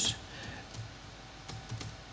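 A few faint keystrokes on a computer keyboard, tapped unevenly as an index is entered into a charting program.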